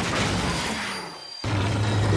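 Sound-effect crash of a derailing train: a sudden loud impact at the start that dies away over about a second, then a low rumble coming in about halfway through.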